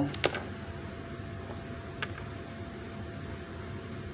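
Steady room noise with a few faint clicks, one just after the start and one about two seconds in, from a deck of tarot cards being handled.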